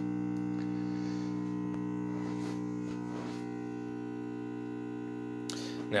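Steady mains buzz with many overtones from a Marantz 2238B stereo receiver, coming through its speakers on both channels. It is the sign of a power-supply fault: the supply voltage is set far too low, and the repairer blames the regulator transistors.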